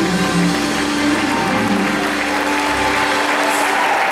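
A live gospel band of bass guitar, drums and keyboard playing, with the bass dropping out about three seconds in as audience applause swells at the close of the song.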